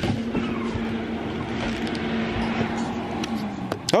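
Battery uplights' cooling fans whirring with a steady hum while the lights charge in their road case, cutting out near the end as the outlet timer switches off the charging power.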